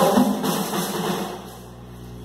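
Ritual drums and percussion playing, the strokes thinning out and dying away about halfway through.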